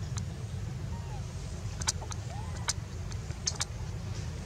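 Outdoor ambience: a steady low rumble, with a handful of sharp clicks and a couple of faint short chirps.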